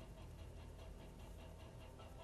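Faint, steady low rumble heard from inside a slowly moving car.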